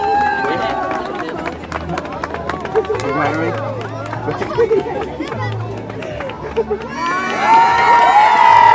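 A large outdoor crowd of many voices chattering and calling out, with scattered clicks. Near the end the voices swell into louder cheering and shouts.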